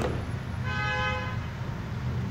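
A horn sounding one steady note for a little over a second, starting about half a second in, over a low steady hum.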